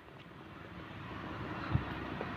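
Faint, steady noise of distant traffic, slowly growing louder, with a soft thump near the end.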